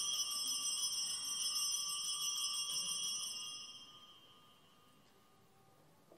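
Altar bells rung at the consecration of the host: one bright ring that starts suddenly and fades away over about four seconds.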